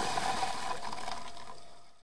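Underwater bubbling and water noise heard on a diving camera's microphone, steady, then fading out near the end.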